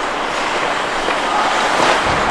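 Ice hockey play in an indoor rink: a steady hiss of skates on the ice, with faint voices in the arena.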